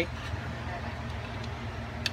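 Steady low hum of room background noise, with no distinct event.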